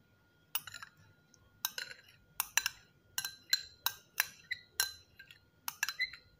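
About a dozen quick, irregular clinks against a small glass bowl as two egg yolks are tipped out of it into a pot of milk.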